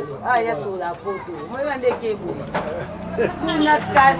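Speech: a woman talking into a handheld microphone.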